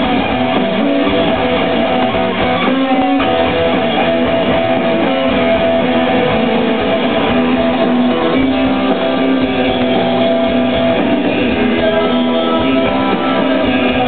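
Rock band playing an instrumental live: electric guitars over drums, loud and continuous with held guitar notes, heard from within the crowd in a dull recording that lacks its high end.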